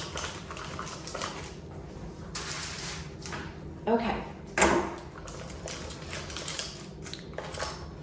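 Rustling and crinkling of a small taped mesh bag being handled, with sharp scissor clicks as the tape is worked at, the loudest click about halfway through.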